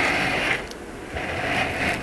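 Cardboard rubbing and scraping as a painted metal fishing spoon is slid in and out under a cardboard template taped inside a box: two spells of light rubbing with a short pause between.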